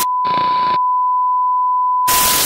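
Steady, unbroken test-tone beep of a TV colour-bar screen, with a short burst of static hiss laid over it near the start.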